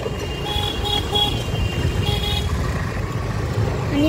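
A vehicle horn beeping in three short toots, then one longer toot about two seconds in, over a steady low rumble of wind and road noise from riding.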